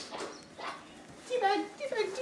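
Soft scuffling, then about one and a half seconds in, loud, high-pitched, wavering yelps from a person pinned on the floor in rough horseplay.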